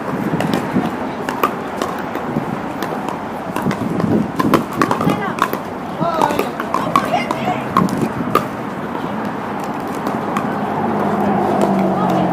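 Pickleball paddles hitting plastic balls on several courts: sharp pops at irregular intervals, thinning out after about eight seconds, among indistinct voices of players calling and chatting. A low steady hum comes up near the end.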